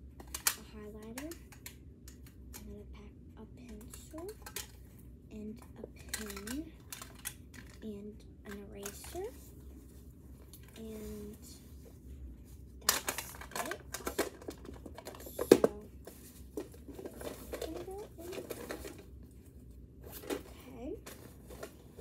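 Rustling, crinkling and knocking of things being handled and packed into a backpack, with a burst of sharp knocks and clatters a little past the middle. A girl's quiet murmuring comes and goes underneath.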